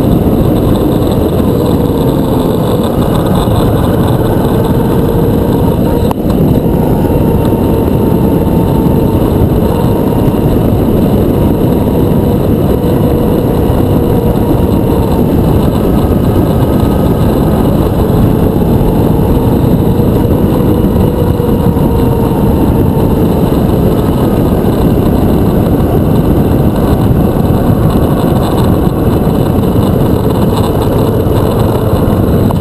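Motorcycle engine running at a steady road speed, its pitch drifting slowly up and down, under loud wind rush on the bike-mounted camera's microphone.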